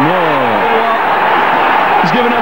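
Football stadium crowd roaring as the ball goes into the net.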